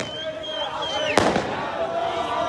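A single sharp firework bang about a second in, over a crowd of fans shouting.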